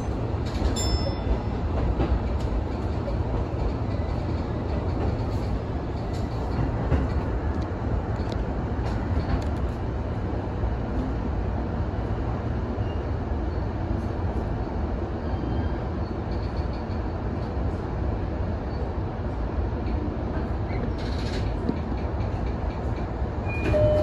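Electric commuter train heard from inside, behind the driver's cab, rolling slowly along a station platform to its stop: a steady low rumble of wheels and running gear with a few faint clicks.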